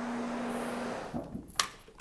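Rotary carpet-cleaning machine running with a steady hum from its motor and pad on the carpet, then cutting out about a second in; a click follows shortly after.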